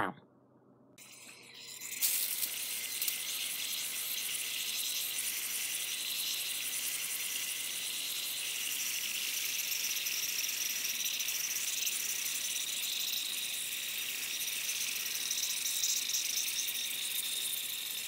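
Handheld pressure sprayer misting a reptile vivarium: a steady, even high hiss of fine spray that starts about two seconds in and holds without a break.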